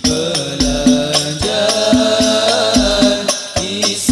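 Al-Banjari ensemble: several hand-struck rebana frame drums beating a quick, even rhythm of about three to four strokes a second, under a group of voices chanting sholawat in long held, gliding notes.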